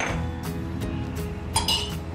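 Kitchenware being handled on a counter: a few light knocks and then a sharper clink with a short ring near the end.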